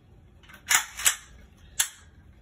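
Three sharp metallic clacks as an Extar EXP-556 AR pistol is handled, the first two close together and a third about three-quarters of a second later.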